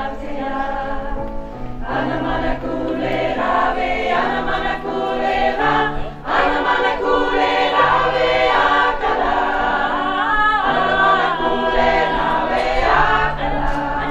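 A choir of mostly women's voices singing a song together in several parts, with held notes over a steady low line.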